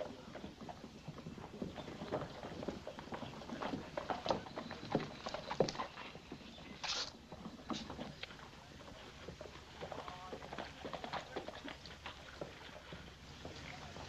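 Horse hooves clopping irregularly on a street, with a brief breathy noise about seven seconds in.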